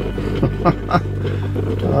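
Stovetop coffee percolator perking on a camp stove's gas burner: a few short bubbling pops about half a second to a second in, over a steady low hum.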